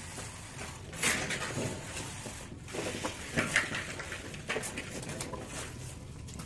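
Irregular scraping strokes of a plastering tool working wet cement plaster on a ceiling.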